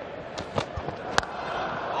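Cricket bat striking the ball once with a sharp crack about a second in, over a steady murmur of the crowd; Paine is hitting a short ball away into the outfield.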